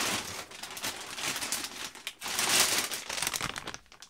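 Plastic bag crinkling and rustling as a pair of sneakers is pulled out of it, loudest a little past the middle and dying away near the end.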